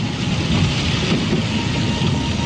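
A steady low rumble with a hiss over it.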